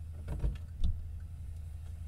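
A few short clicks and knocks over a steady low hum, the loudest near the middle.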